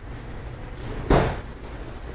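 One loud, sharp smack about a second in: an impact between two martial artists sparring in MMA-style gloves, dying away within a few tenths of a second.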